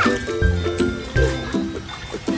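Background music: an instrumental children's tune with short, repeated notes over a bouncing bass line and a steady beat.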